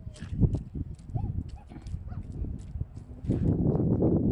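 A rock being handled and shifted in wet mud by hand: scattered clicks and wet squelches, with a louder stretch of scraping and squelching near the end.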